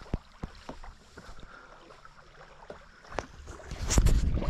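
Handheld action camera being moved about: a few light knocks and rubbing on the housing over faint wind, with a rush of wind and handling noise building near the end as the camera is swung round.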